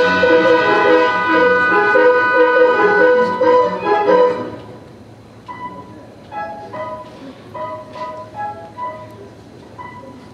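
Pit orchestra playing dance music, full and loud, then about four and a half seconds in dropping to a soft, sparse line of separate held notes.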